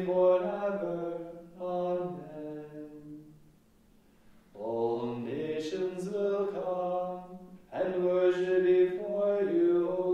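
Liturgical chant of the Divine Office sung in unison at a steady pitch, in long phrases with a short silent breath about four seconds in.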